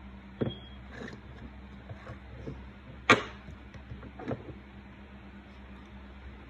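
A few scattered short knocks and clicks over a steady low hum, the loudest about three seconds in: things being handled close to the microphone while the scene is set up.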